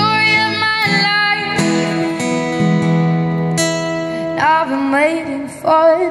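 A young female voice singing long held notes live into a microphone, with a steel-string acoustic guitar strummed underneath. The notes waver in pitch in the second half.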